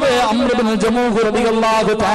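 A man's voice delivering a Malayalam Islamic speech at full speech level, in a drawn-out, melodic delivery with some syllables held on a steady pitch.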